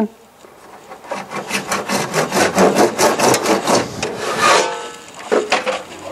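Hand saw cutting through a 40mm PVC pipe in quick, even back-and-forth strokes. The sawing starts about a second in and stops after about three and a half seconds, with a short squeak near the end.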